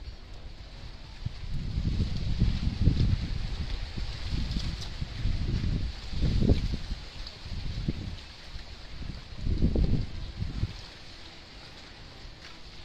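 Wind buffeting the microphone in irregular low rumbling gusts, loudest around the middle, with faint scraping of a small hand trowel digging in garden soil.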